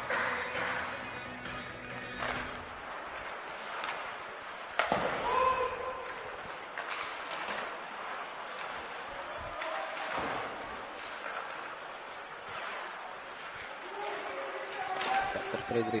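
Live ice hockey play in an echoing, empty arena: skates on the ice, sticks and puck knocking, and a sharp impact, the loudest sound, about five seconds in. Arena music fades out in the first couple of seconds.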